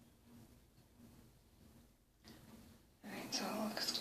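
Quiet room for about three seconds, then a woman's voice starts under her breath, with no clear words.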